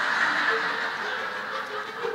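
Audience laughing, swelling at once and fading slowly.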